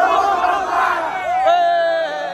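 A large crowd of people shouting together with raised arms, many voices at once. Near the end the crowd noise gives way to one long held note.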